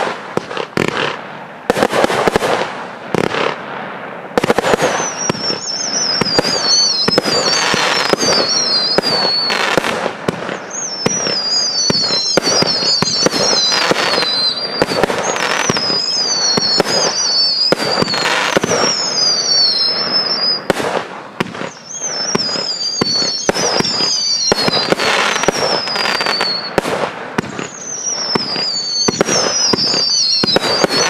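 Consumer fireworks batteries firing, a fast, steady string of launch thuds and aerial bangs. From about five seconds in, high whistles that fall in pitch come again and again over the bangs.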